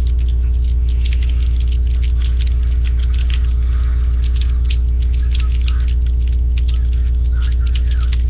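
Steady electrical hum with a stack of buzzing overtones, unchanging throughout, with faint scattered crackles and clicks above it.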